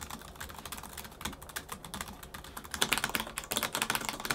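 Fast typing on laptop keyboards, a rapid stream of key clicks. The first, fainter run is on the XMG Neo 15. About three-quarters of the way in, a way louder, sharper clatter follows from the XMG Neo 16's mechanical keyboard with Cherry MX ultra low profile switches.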